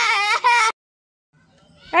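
A young girl's loud, high-pitched wailing cry, cut off abruptly by an edit under a second in, followed by a silent gap; a voice begins just before the end.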